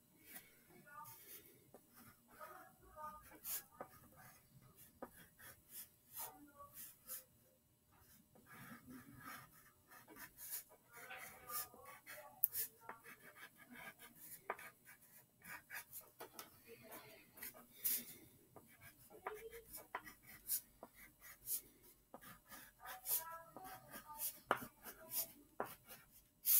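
Faint scratching of a crayon on paper on a clipboard, in many short quick strokes as stripes are sketched.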